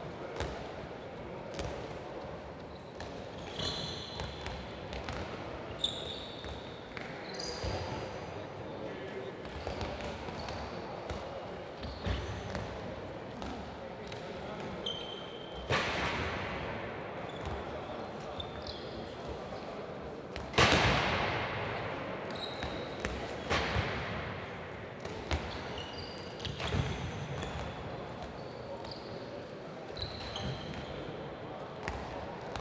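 Handballs bouncing on a sports-hall court and players diving and landing on the floor, with short high shoe squeaks and indistinct voices. Several sharp impacts, the loudest about twenty seconds in.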